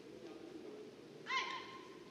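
A single short squeak of a court shoe on the hall floor about a second in, over the low murmur of the arena.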